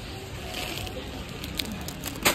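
Steady supermarket background noise with a shopping cart rolling over tiled floor, and a plastic crisps bag crinkling near the end.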